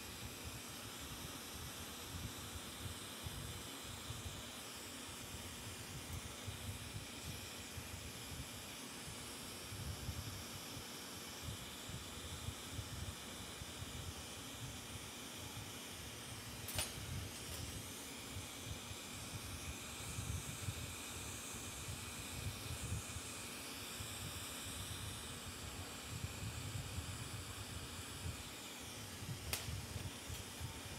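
Bench-mounted glassworking torch burning with a steady hiss while a borosilicate glass sculpture is heated in its flame, with a low, uneven rumble under the hiss. A sharp click about halfway through and another near the end.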